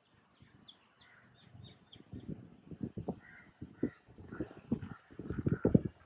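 Crows cawing repeatedly, with small birds chirping in short high notes in the first couple of seconds. Low knocks and rustles run under the calls and are loudest near the end.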